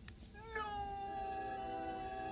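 Hermes Conrad, a cartoon character, crying in one long wail that starts about half a second in, rises briefly and then holds on one high pitch. It plays from a laptop's speakers and is recorded off the screen.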